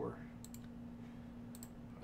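Computer mouse clicking, a couple of short clicks about half a second in and another pair near the end, over a steady low electrical hum.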